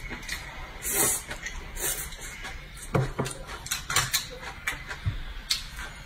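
Close-up wet chewing and slurping of a mouthful of greens, with irregular mouth clicks and sucking sounds and a few short hums from the eater.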